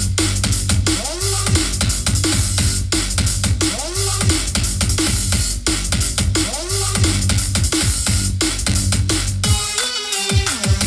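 Electronic drum-and-bass music with a heavy, steady bass line and fast drum hits, played through the Oxa Yoi Akareddo 601 2.1 speaker system as a sound test.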